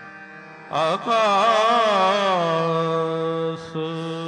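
A male ragi sings Sikh kirtan in raag Basant. After a soft held accompaniment, a loud melismatic vocal phrase with wavering, gliding pitch enters about a second in and settles onto a held note near the end, over a steady harmonium drone.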